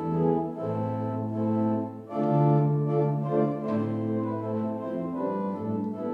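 Organ playing slow, sustained chords over a held bass note, the harmony changing every second or two.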